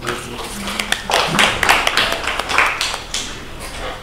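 Small audience applauding: a dense patter of hand claps that thins out near the end.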